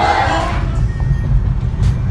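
Church choir music cuts off about half a second in, followed by the steady low rumble of a car's interior.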